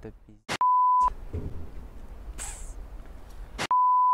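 An edited-in 1 kHz beep tone sounds twice, each about half a second long and each opened by a click, once near the start and again at the end, cutting off the speech: a censor bleep of the kind played over TV colour bars. Between the beeps there is only faint outdoor background.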